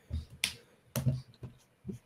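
Two short, faint clicks about half a second apart, like a key or mouse button pressed to advance a presentation slide.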